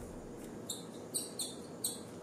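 A screw being driven with a screwdriver into a 3D-printed plastic clamp part, squeaking four times as it turns.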